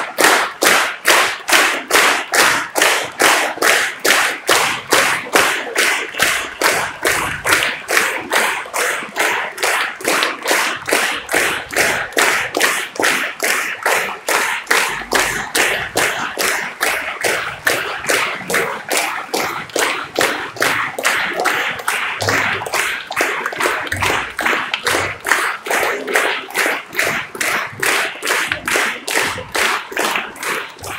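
Large audience clapping together in a steady rhythm, about two and a half claps a second, which thins out near the end.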